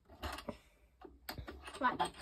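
Stanley multi-angle vice's ball-joint locking lever being undone by hand: a few light, separate clicks and rattles as the joint is freed.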